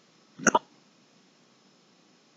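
A man makes one short hiccup-like catch in the throat about half a second in, lasting a fraction of a second.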